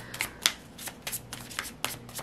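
A tarot deck being shuffled by hand: a string of short, irregular card clicks and rustles.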